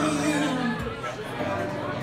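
Live acoustic guitar song in a bar room, with a held note that bends down and ends under a second in, over audience chatter close to the microphone.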